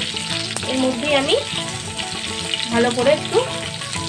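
Hot oil sizzling in a kadai as boiled baby potatoes fry, stirred and turned with a silicone spatula.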